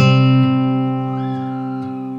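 Background music: a single guitar chord rings out and slowly fades.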